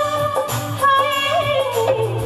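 A woman sings an old Hindi film song live, holding long notes with a wavering ornament in the second half. A band with keyboard accompanies her over a steady, pulsing low beat.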